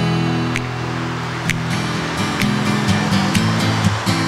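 Acoustic guitar playing an instrumental passage: strummed chords about once a second over low held notes that change in steps, with no singing.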